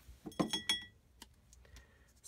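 A short cluster of light taps and a brief clink with a faint ringing tone, about half a second in, from hands handling craft supplies on a desk.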